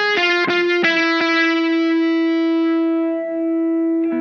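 Distorted electric guitar (Ibanez RG370DX with Seymour Duncan Distortion Mayhem pickups) played through a Wampler Tumnus Deluxe overdrive set for high gain into a Blackstar amp's clean channel. It plays a quick run of four picked notes, then holds a single note that sustains for nearly three seconds, its brightness fading as it rings.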